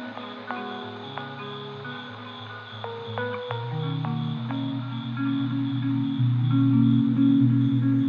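Background music: short plucked notes over sustained low bass notes, getting louder in the second half.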